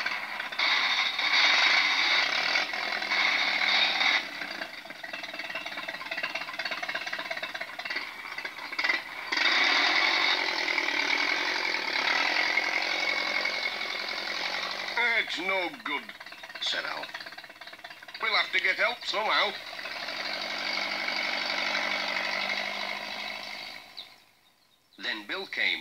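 Small tractor's engine running hard with a rough, chattering clatter while the tractor is stuck in mud, its wheels spinning without grip. The noise is loudest for the first few seconds, eases, then comes up loud again about ten seconds in.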